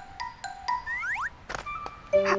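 Cartoon background music with short held notes and two quick rising glides about a second in, then a sharp knock about a second and a half in.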